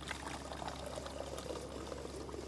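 Thick blended leek-and-potato soup, just pasteurised, pouring in a steady stream from the machine's dispensing tap into a plastic measuring jug, with small irregular splashes.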